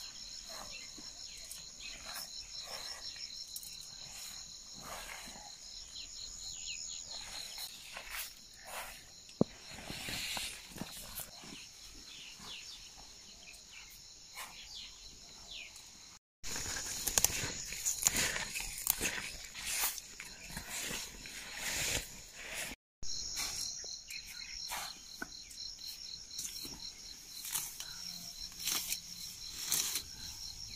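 Insects trilling steadily in a high, finely pulsed chorus in a cornfield, fading out about a third of the way in and returning near the end. Irregular rustling of leaves and clothing runs throughout and is loudest in the middle stretch.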